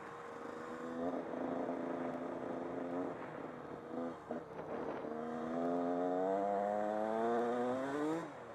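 Honda CR125 two-stroke dirt bike engine under way, heard from the rider's helmet. It holds a steady pitch, eases off briefly about four seconds in, then pulls with a steady rise in pitch to near the end.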